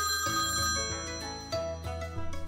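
A telephone ringing sound effect over light background music; the ringing stops about halfway through while the music carries on.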